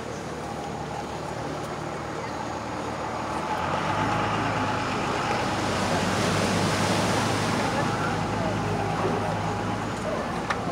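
An engine running with a steady low hum that swells from about three and a half seconds in, is loudest in the middle and eases off near the end, over a faint murmur of voices.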